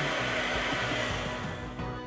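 Compressed-air spray gun hissing steadily as it sprays dye onto a plastic interior trim panel, fading out near the end, over background music.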